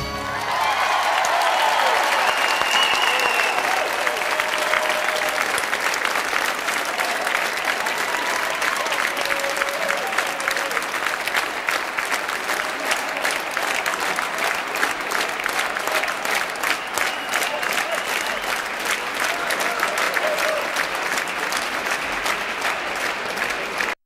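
A large audience applauding after the song ends, with a few voices calling out over the clapping; the individual claps grow more distinct in the second half.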